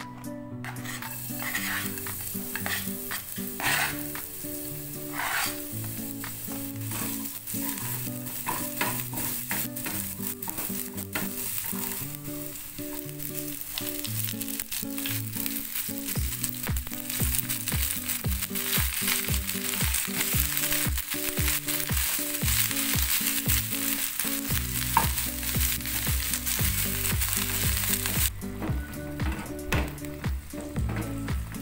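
Minced garlic sizzling in hot oil in a small nonstick frying pan, then leafy greens stir-fried in it with a spatula, with knocks and scrapes of the spatula against the pan. The sizzle drops away sharply near the end.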